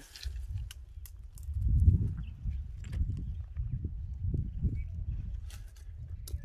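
Guamúchil tree branches being shaken with a long hooked pole, giving scattered light clicks and rustles as dry pods drop. Under it runs a low rumble that swells about two seconds in.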